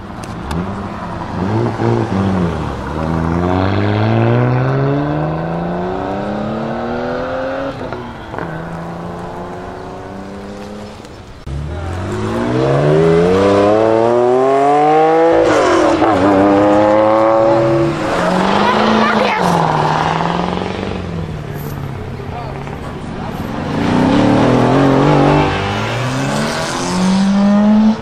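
Several cars accelerating hard one after another, engines rising in pitch as they rev up. The loudest starts suddenly about twelve seconds in: a classic air-cooled Porsche 911 Carrera flat-six pulling away. Near the end a hatchback revs as it pulls out.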